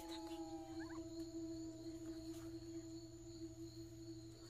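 A steady low humming tone, with fainter higher tones that slide upward about a second in, over faint steady high-pitched whines.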